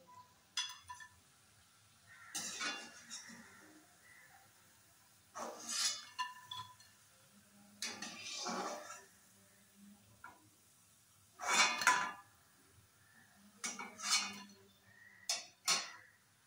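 Metal slotted spoon scraping and clinking against an aluminium kadai as fried onion pakoras are lifted out of the oil, in short clatters every couple of seconds.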